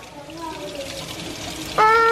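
Kitchen faucet running, the stream splashing over a hand held under it into the sink. Near the end a child breaks into a long, high crying wail that sinks slightly in pitch.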